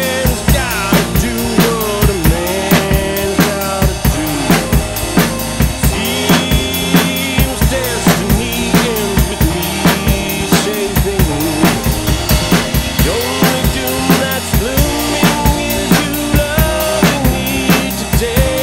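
Acoustic drum kit played live over the song's recorded backing track: a steady beat of kick drum, snare and cymbals, about two or three hits a second, over pitched instrumental music with no singing.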